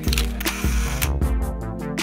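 A camera shutter click sound effect right at the start, with a short hiss after it, over background music with a steady beat.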